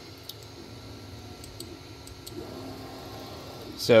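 Creality Ender 3 V3 SE 3D printer running its auto Z-offset routine with the nozzle heating: a steady low fan hum with a few light clicks.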